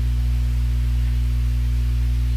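Steady electrical mains hum in the recording: a loud, unchanging low buzz with a stack of even overtones and a faint hiss above it.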